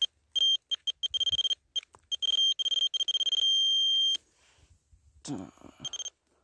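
Handheld metal-detecting pinpointer beeping with a single high tone: a few short beeps, then a rapid run of beeps, then longer beeps merging into one continuous tone that cuts off suddenly. The quickening beeps and the steady tone show the probe tip closing in on a metal object in the soil.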